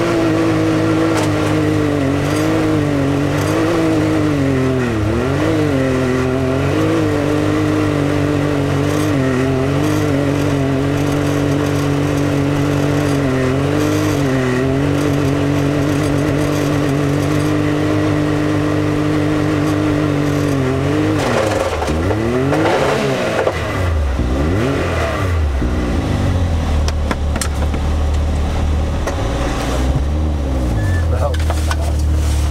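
Can-Am Maverick X3's turbocharged three-cylinder engine pulling at a steady speed with small dips in throttle. About two-thirds of the way in its pitch swings sharply up and down several times, then settles to a lower, slower note as the machine comes to a stop.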